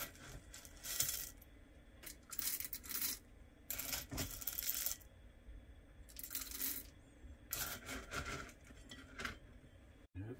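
Whole roasted coffee beans rattling and clattering against stainless steel as they are scooped from a metal canister and tipped into a stainless steel hand coffee grinder, in repeated short bursts.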